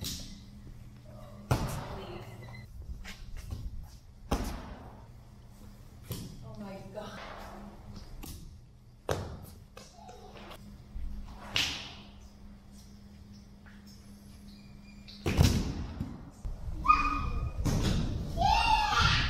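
Young children jumping and landing barefoot on foam plyo boxes, a stack of rubber bumper plates and rubber gym flooring: a series of separate thuds, a few seconds apart, the loudest two near the end.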